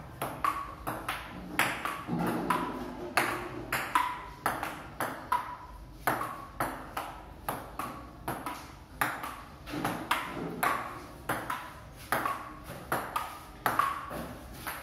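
Table tennis rally: the ball clicking off rubber paddles and bouncing on a wooden table top, a steady run of two to three hits a second with no break.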